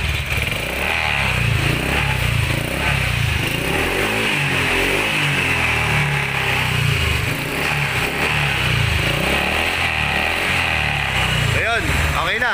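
Honda Click 125i scooter's single-cylinder fuel-injected engine running steadily just after starting. It now starts because the side-stand safety switch wire, cut by rats, has been reconnected.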